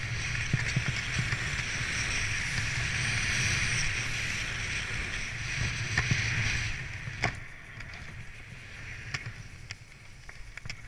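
Snowboard sliding and turning through powder snow, a steady hiss of the board on snow mixed with wind buffeting the camera microphone. It dies down about seven seconds in, leaving a quieter bed with scattered small clicks.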